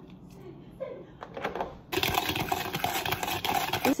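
A metal whisk stirring fast in a plastic mixing bowl: a rapid, dense clatter of clicks and scrapes that starts about halfway through after a quieter start.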